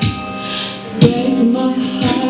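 Woman singing live into a microphone over a looped backing, with a low thump at the start and another about a second in.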